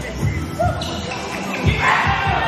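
A basketball dribbled on a hard gym floor: a few low bounces, the loudest near the end.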